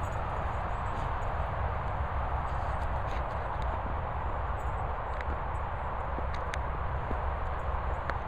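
Steady outdoor background noise, a low rumble under a broad hiss, with a few faint clicks.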